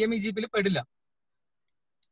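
A person's voice speaking over an online call, cut off less than a second in and followed by dead silence.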